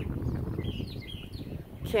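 A few short, faint bird chirps about half a second to a second in, over a low steady outdoor rumble.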